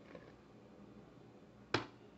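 Flour poured from a measuring cup into a stainless steel pot, faint, then one sharp knock near the end.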